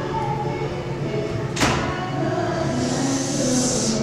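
Beatboxing into a microphone: a steady low hummed tone, a single sharp hit about a second and a half in, and a long hiss near the end.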